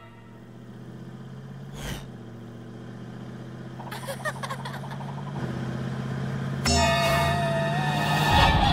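Cartoon car engine humming steadily and growing slowly louder as it approaches. A brief whoosh comes about two seconds in, and a louder held higher-pitched tone comes in over the engine during the last second or so.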